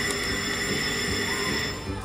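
Video slot machine sound effect during a free-games bonus: a held electronic chime of several high, steady tones that lasts almost two seconds and then dies away.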